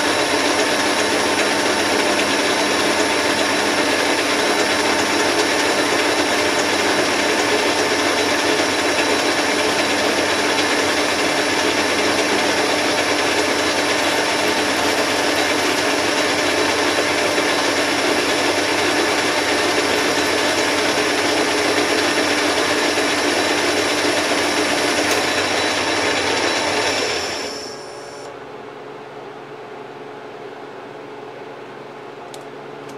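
Metal lathe taking a turning pass on a 2-inch bar of pre-hardened 4140 steel with a carbide insert: a loud, steady machining noise with high whining tones. It drops away suddenly about 27 seconds in, leaving a quieter steady hum.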